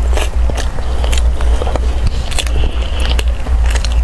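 Close-miked eating sounds: many small mouth clicks and chewing as a spoonful of purple-rice dessert is eaten, then a metal spoon scraping inside a metal tin near the end.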